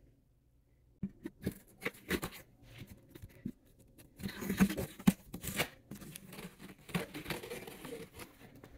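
Packing tape being slit and torn open along the top seam of a cardboard shipping box: scattered clicks and scrapes at first, then a longer stretch of rasping tearing about four seconds in.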